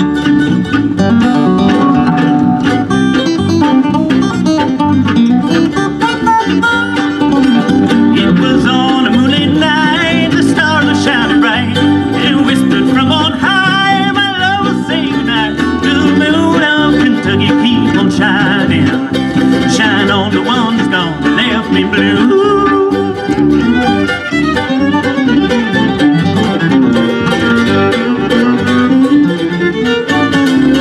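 A live band plays, with a fiddle over guitars.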